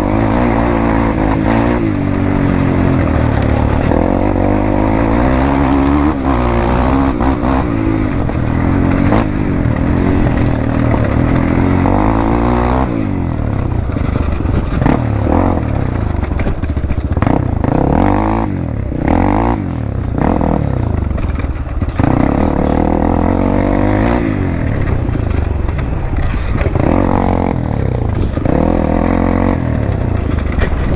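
Dirt bike engine running on a rocky downhill descent, the revs rising and falling again and again with the throttle.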